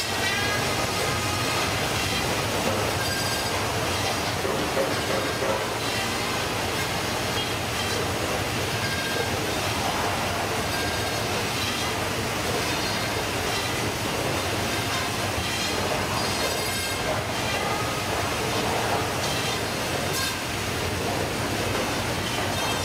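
Fish processing machine and plastic modular conveyor belt running steadily: a continuous mechanical clatter and hum, with faint high squeaks now and then.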